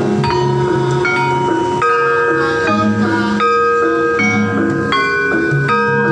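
Javanese gamelan music: a bonang's small bronze kettle gongs struck with mallets in a steady rhythmic pattern of ringing notes, over lower repeating tones.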